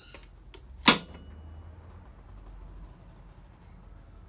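A GEYA DC circuit breaker on the MPPT line being switched closed by hand: one sharp, loud snap about a second in. The capacitors have been pre-charged through a resistor first, so it closes without drawing a massive inrush current.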